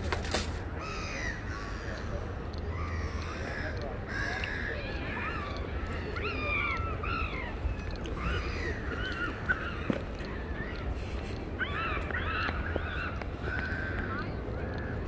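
Birds calling again and again in short calls throughout, over a steady low background hum.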